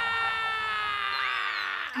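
A man's long, loud drawn-out cry: one held note that slides slowly down in pitch and breaks off near the end.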